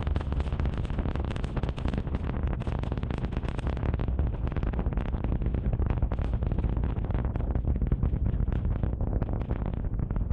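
Super Heavy booster's 33 methane-fuelled Raptor engines during ascent, heard from the ground: a steady deep rumble overlaid with dense crackling.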